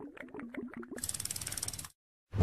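Ratcheting sound effect on an animated end card: a quick run of clicks over a low stepping tone, then about a second of fast, high-pitched ratchet clicking that stops just before the end.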